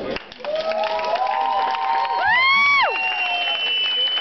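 Bachata music cuts off at the start, followed by an audience cheering and clapping, with several long shouted whoops. The loudest and highest whoop comes a little over two seconds in.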